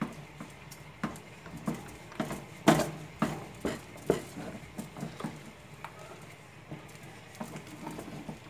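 A wooden spoon stirring thick mashed cassava purée in a metal pot, knocking and scraping irregularly against the pot, with one louder knock about three seconds in.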